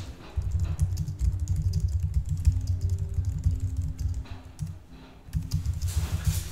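Typing on a computer keyboard: quick, irregular runs of key clicks with low thuds, with a short pause about four and a half seconds in.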